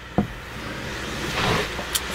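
A single knock close to the microphone, then a breathy hiss that swells and fades like a drawn-in breath, ending with a small mouth click just before speaking.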